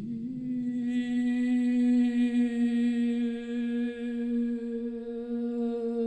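A single low droning note that slides up in pitch at the start and then holds steady, its overtones growing fuller about a second in.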